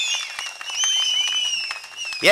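A crowd clapping during a pause in a speech, with several high, long, wavering whistles over the clapping.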